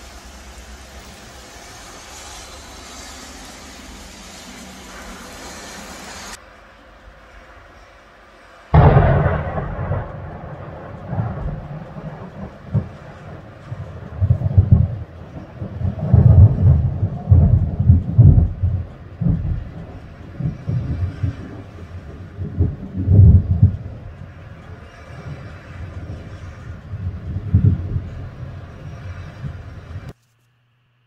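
Rain falling steadily, then a sudden loud thunderclap about nine seconds in, followed by long rolling thunder that swells and fades several times.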